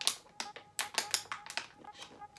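Light clicks and taps, several a second, from a cardboard shipping box being handled.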